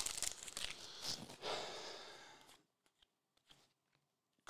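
Foil trading-card pack wrapper being torn open and crinkled by hand, a crackly rustle that fades out about two and a half seconds in; after that, only a couple of faint clicks.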